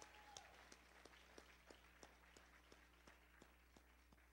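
Near silence, with faint, evenly spaced clicks about three a second, like footsteps, and a faint steady tone that stops about half a second in.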